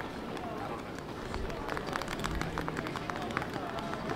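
Quiet outdoor marina ambience: faint distant voices over a low steady background, with scattered light clicks and taps through the middle.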